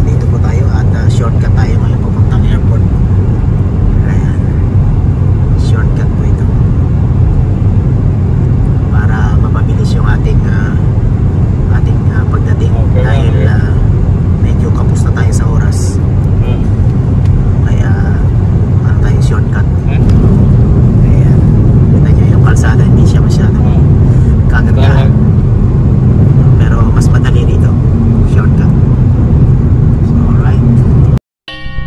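A car driving at highway speed, heard from inside the cabin: a steady low rumble of road and engine noise that gets louder about two-thirds of the way through. Faint voices come and go in the background.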